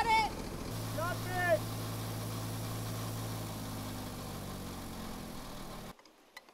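Fire engine's motor running steadily, its note stepping to a new steady pitch about a second in. Two brief shouted calls come over it early on, and the engine sound cuts off abruptly just before the end.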